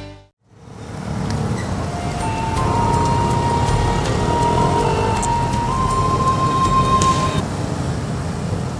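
Background music with a high held tone that steps in pitch, over steady road-traffic noise. Both fade in after a short silence near the start.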